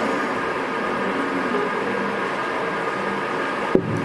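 Steady background hiss and hum of a hall, with a single short knock near the end as a drinking glass is set down on the table.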